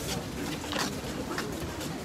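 Footsteps of a group walking on grass, a soft step roughly every half second, over a faint murmur of voices.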